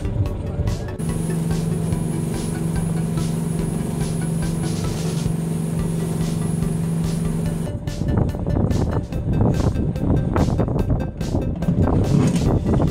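Fishing boat's engine running at speed, a steady low hum. About eight seconds in it gives way to rougher, uneven wind and water noise.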